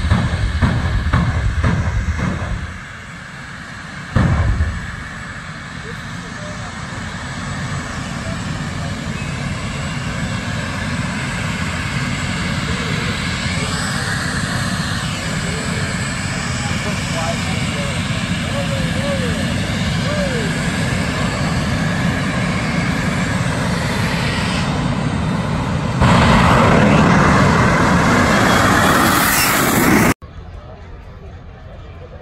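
Drag racing car engines at a drag strip start line: a loud, low engine sound during a burnout, a sharp bang about four seconds in, then steady engine noise that slowly builds and jumps louder about four seconds before the end.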